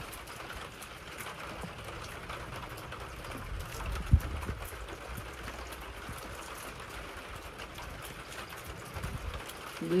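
Steady light patter of rain with a hand brushing over damp potting soil, and one dull thump about four seconds in.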